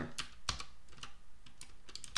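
Computer keyboard keys being pressed: an irregular run of sharp clicks, several to the second.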